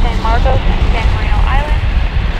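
A steady low rumble of wind on the microphone, mixed with the running of a center-console boat's triple outboard motors at speed. Short voice-like calls come through over it.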